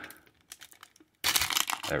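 Foil wrapper of a 1991 Fleer Ultra baseball card pack being worked at, with a few faint crinkles, then tearing open with a burst of loud crinkling a little past a second in.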